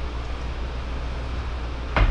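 Steady low hum with a faint even hiss: background room noise, with no distinct event until a single short knock at the very end.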